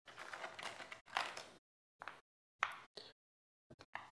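Small metal hardware rattling and clicking in a plastic parts tray as it is picked through by hand: a rustle for about a second and a half with one sharp click in it, then a few separate clicks and small ticks.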